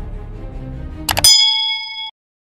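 Subscribe-animation sound effects: a quick double click about a second in, then a bright bell ding whose several clear tones ring on. A low synth music bed underneath cuts off as the bell strikes.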